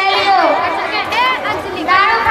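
Speech only: a man talking into a handheld microphone, amplified over a PA.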